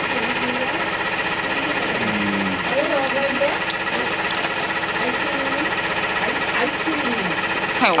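A small engine or motor running steadily with a fast, even beat, with faint voices under it.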